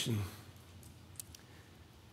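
A man's spoken word trailing off in a room, then a quiet pause with a few faint, short clicks around the middle.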